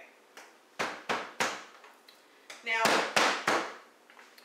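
Hand-held meat pounder striking boneless, skinless chicken breasts on a cutting board: six blows in two sets of three, about a third of a second apart, the second set louder.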